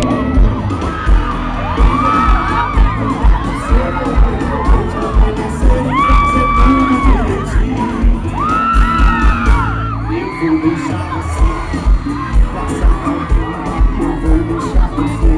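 Loud live concert music with a steady heavy bass beat, recorded from inside the crowd, with the audience screaming and cheering over it; several long high-pitched screams stand out, around two, six and nine seconds in.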